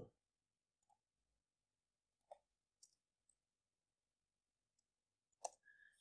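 Near silence broken by about four faint, isolated clicks of a computer mouse and keyboard, the loudest near the end.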